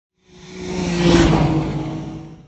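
Logo sound effect: a car-like whoosh with a steady engine hum under the rush, swelling to a peak about a second in and then fading away.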